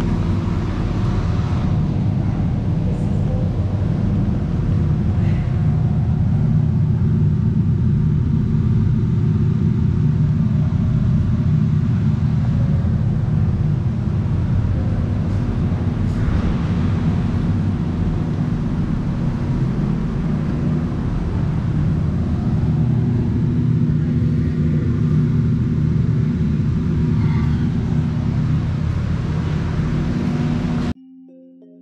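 Large wall-mounted ventilation fans running: a loud, steady low drone with a constant hum.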